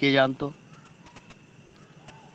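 A man's voice drawing out one syllable, then a pause with only faint room noise and a few light ticks.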